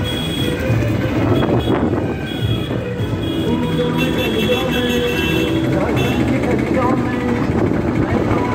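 Loud, busy street sound: voices and music with held notes, over general traffic noise.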